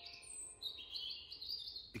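A bird singing: faint, high, drawn-out notes, strongest through the second half.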